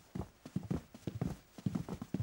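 Footsteps of several people in hard-soled shoes walking across a hard floor: a quick, uneven patter of steps.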